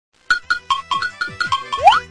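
A short music jingle: quick plinking notes at about five a second, ending in a rising whistle-like glide.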